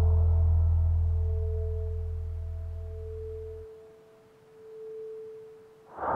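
Sustained pure sine tones of a brainwave-entrainment meditation track: a low drone fades away about two-thirds of the way through, leaving a single mid-pitched tone that swells and dips near the end.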